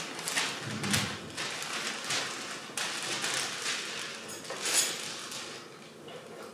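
Newspaper pages rustling and crinkling as they are handled, in short irregular bursts of crackle.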